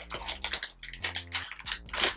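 Plastic snack bag crinkling and rattling as crunchy cheese snacks are taken out of it by hand, a quick irregular run of small crackles and clicks.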